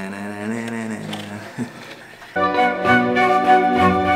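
A man singing a drawn-out 'tanana' fanfare on a held, wavering note. About two seconds in, background music comes in louder with sustained chords.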